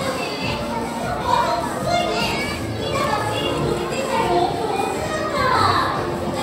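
Many children's voices overlapping, chattering and calling out in a crowded audience, with faint music underneath.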